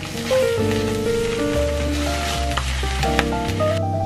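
Eggs sizzling in a hot frying pan, a steady hiss that stops shortly before the end, with background music playing over it.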